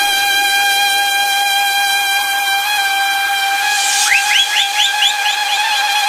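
Beatless breakdown in a guaracha electronic dance mix: one held, whistle-like synth tone with no drums. About four seconds in, a quick run of short rising chirps sounds over it.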